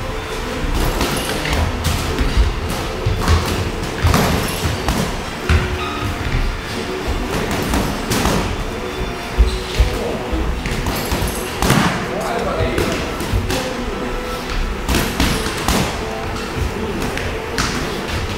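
Gloved punches landing in boxing sparring: scattered sharp thuds at an uneven pace, the loudest about nine seconds in, over steady background music.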